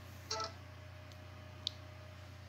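A smartphone giving a short electronic tone near the start, then one light tap about a second and a half in, over a faint steady low hum.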